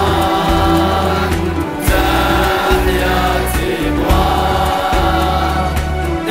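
Music: a sung anthem, a group of voices holding long notes over a steady bass accompaniment.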